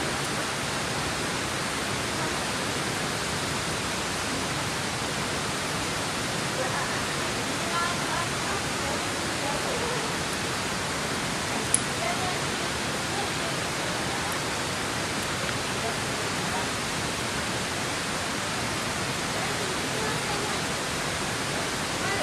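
Steady rush of river water, an even hiss that does not change, with one sharp click about twelve seconds in.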